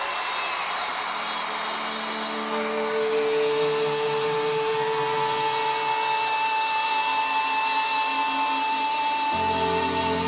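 Instrumental song intro: a whooshing noise wash under long, sustained synthesizer tones that build up over the first few seconds, with a high wavering tone on top. Deep bass notes come in near the end.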